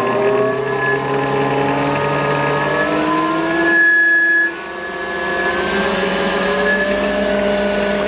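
Electric drive motor of a stator test bench spinning a flywheel and stator, a steady whine whose pitch rises slowly as the RPM is turned up. It gets briefly louder a little before halfway, then drops suddenly in loudness.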